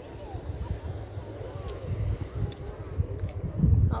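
Wind buffeting a phone microphone in uneven low gusts, strongest just before the end. Faint distant voices and a few small clicks sit beneath it.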